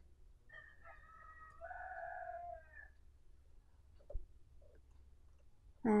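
A faint animal call of about two seconds with a steady, held pitch, starting about half a second in and dropping off at its end. A short knock follows about four seconds in.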